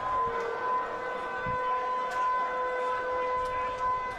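Stadium hooter sounding one long, steady note before kick-off, cutting off just after four seconds.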